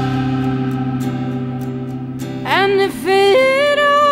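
Recorded folk-rock song: a held band chord fades slowly, then a woman's voice comes in about two and a half seconds in, singing long held notes.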